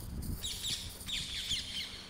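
Small birds chirping: a quick run of short, high chirps, several a second, starting about half a second in.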